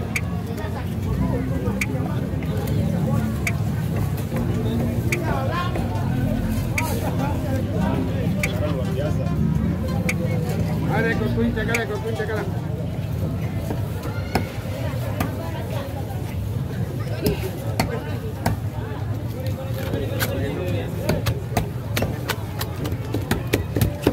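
Busy open-air fish market ambience: background voices and chatter over a steady low rumble, with scattered sharp clicks and taps of a knife cutting into a skipjack tuna on a wooden chopping block.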